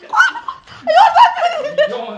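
Women laughing in short repeated bursts, mixed with excited talk.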